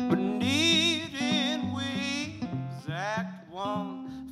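Acoustic guitar strummed in a country-folk song, with a man singing over it in long, wavering notes.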